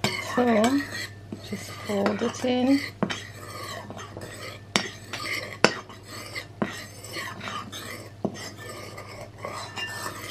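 Metal spoon stirring and folding flour into a whisked egg-and-sugar batter, scraping the bowl and knocking against it with several sharp clicks. Two brief wavering tones come near the start and about two seconds in.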